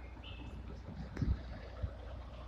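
A low steady rumble with two soft low thumps, one about a second in and one near the end.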